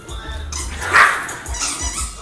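A small dog barks once, sharply, about a second in, over background music.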